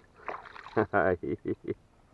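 A man laughing in a run of short bursts about a second in, after a light splash of water as a released traíra (wolf fish) swims off.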